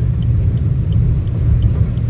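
Steady low road and engine rumble of a car driving on a wet highway, heard from inside the cabin, with faint ticks recurring about every two-thirds of a second.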